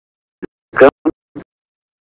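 Four short, broken fragments of a man's voice over a telephone line, chopped up by stretches of dead silence, as on a breaking-up phone connection.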